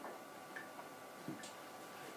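Quiet classroom room tone with a faint steady hum and a few faint, scattered clicks.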